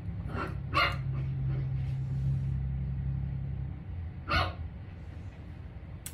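A pet dog barking in short sharp yaps while playing with a cat: two quick barks near the start and one more about four seconds in, over a low steady rumble.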